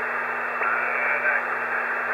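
Steady band-limited hiss of HF band noise from a homebrew AD5GH Express Receiver in upper-sideband mode, heard in a gap between voice transmissions on the 20-metre amateur band. The audio is cut off by the receiver's narrow IF filter, which gives the hiss its thin, boxy sound.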